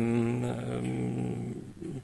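A man's drawn-out hesitation sound, a low 'yyy' held steady in the voice, fading out near the end before he goes on speaking.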